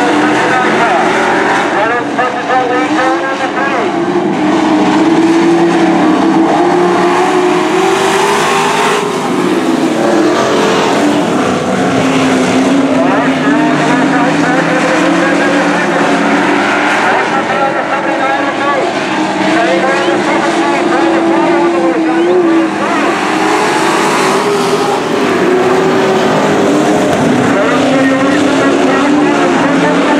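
A pack of IMCA dirt-track race trucks running hard around a dirt oval, several engines at once, their pitches rising and falling as they accelerate and ease off through the turns.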